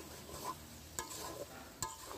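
A spatula stirring pieces of goat meat in spice paste in a metal pan, with a low sizzle and two light clinks against the pan. The mutton is being slow-fried in its masala (kosha) and is almost done at this stage.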